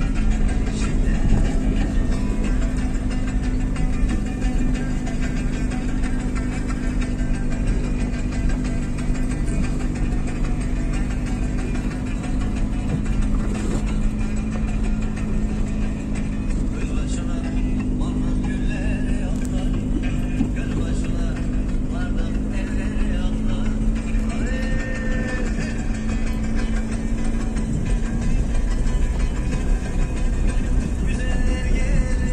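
Music plays over a steady engine drone, heard from inside a car cabin while following a combine harvester.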